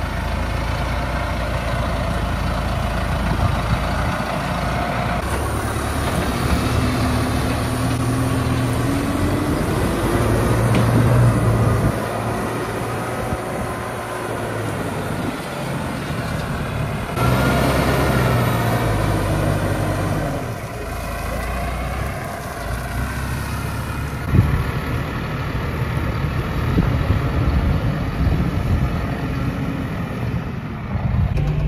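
Farm tractor's diesel engine working a front-end loader, revving up and down as the bucket digs into and lifts gravel.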